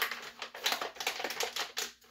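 Plastic bag crinkling, with quick irregular crackles as hands work at opening it.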